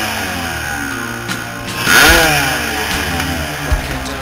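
Kawasaki dirt bike engine running and blipped once about two seconds in, pitch jumping up and then falling away, with music playing along.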